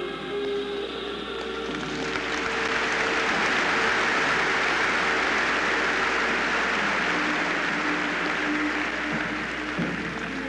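Audience applauding, swelling up about two seconds in and easing off near the end, over background music with long held notes.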